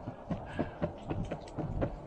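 Skateboard wheels rolling on a concrete sidewalk: a low rumble with a string of short, irregular clicks and knocks, several a second.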